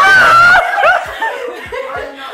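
Women shrieking and laughing excitedly, loud: a high-pitched squeal held for about half a second, then short bursts of laughter.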